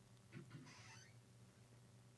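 Near silence: studio room tone with a faint low hum, and a brief soft sound, such as a breath, early in the pause.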